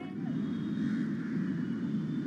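City street ambience: a steady rumble of traffic with a faint hum of voices.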